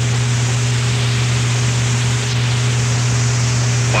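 Steady hiss with a constant low hum: the background noise of a B-52 bomber crew's in-flight cockpit recording, aircraft and recorder noise with no voices.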